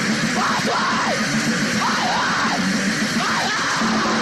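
Crust/hardcore punk band playing at full tilt: a dense wall of distorted guitars, bass and drums, with shouted vocals swooping up and down in short yells.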